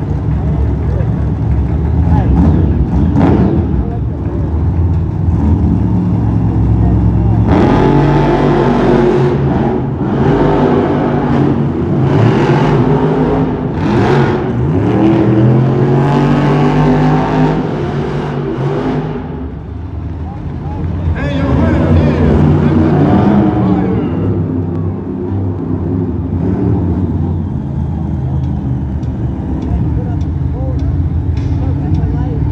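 Monster trucks' supercharged V8 engines revving hard during a race, the engine pitch climbing and falling again and again through the middle of the stretch, echoing in an indoor arena. The engines ease briefly about two-thirds of the way in, then rev up once more.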